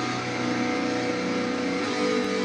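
Metalcore backing track: distorted electric guitars holding sustained chords, with a chord change near the end.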